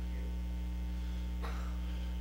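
Steady electrical mains hum in the microphone and sound-system chain: a low, unchanging hum with its evenly spaced overtones.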